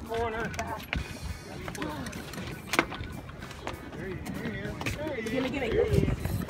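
Indistinct talk from several people in the background, with two sharp clicks, about one second and about three seconds in.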